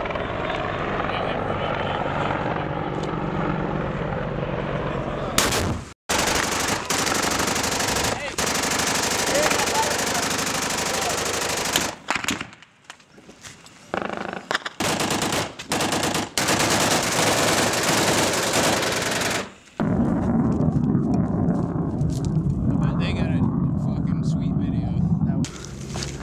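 Sustained automatic small-arms fire in a firefight, loud and dense, in several stretches broken off by abrupt cuts.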